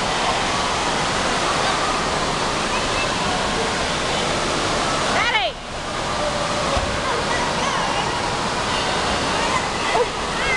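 Steady rushing-water noise of an indoor water park's pool, with children's voices echoing faintly over it. A high, falling call sounds about halfway through, followed by a brief dip in the noise.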